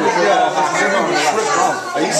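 Several people talking over one another: indistinct, overlapping chatter with no single clear voice.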